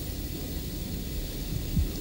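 Steady hiss and low hum of an old film soundtrack in a pause between speech, with one brief low thump near the end.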